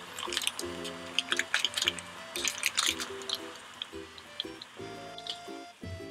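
Light background music with plucked notes, over water at a rolling boil in a saucepan. The water gives a quick run of sharp pops in the first half and only scattered ones later.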